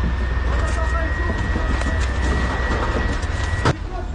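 Steady low rumble under faint muffled voices, with a thin steady high whine; a single sharp click near the end.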